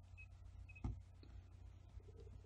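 Quiet room tone with a low steady hum, broken by a single sharp computer mouse click a little under a second in and a fainter tick shortly after.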